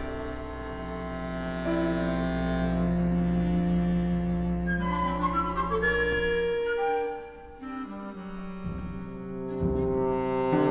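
Orchestral music from an opera: slow, sustained held notes. A low held note drops away about seven seconds in while higher lines carry on.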